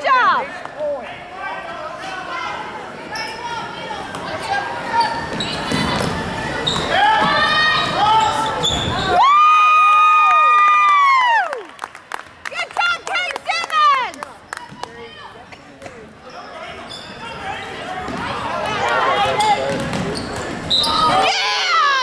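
Basketball game in a gym: a ball bouncing on the hardwood floor amid spectators' voices. About nine seconds in, one loud held high tone lasts about two seconds.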